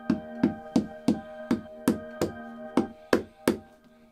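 Quick hammer taps, about three a second and slightly uneven, like a cobbler's hammer on a boot sole, over sustained background music tones that fade out about three seconds in.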